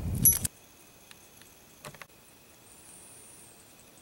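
A brief metallic clink from the safety tie's brass ring in the first half-second, ringing shortly, then a quiet outdoor background with a few faint clicks.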